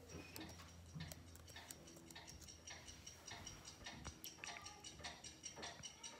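Many clocks ticking out of step with one another, played faintly through a television's speakers. The ticks grow busier toward the end.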